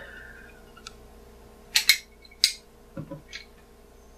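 A hand-held plastic lever citrus squeezer being handled over a small measuring cup: three sharp clicks between about 1.7 and 2.5 seconds in, then two fainter taps about a second later, otherwise quiet.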